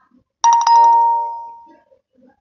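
Bell-like chime struck twice in quick succession, about a fifth of a second apart, its clear tone ringing on and fading away over about a second and a half.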